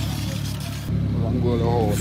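A car engine running with a steady low hum while a voice shouts from about halfway through.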